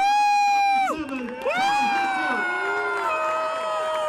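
A man's voice over a public-address system, drawn out in two long held shouts: a short one at the start, then one of nearly three seconds that steps slightly down in pitch toward the end. A crowd cheers beneath it.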